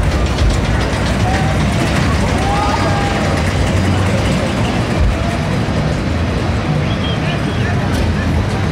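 Fairground din: a steady low rumble of running rides and machinery, with faint distant voices calling out now and then.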